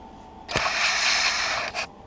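Handling rustle: a sharp click about half a second in, then about a second of loud rustling, and a shorter rustle near the end.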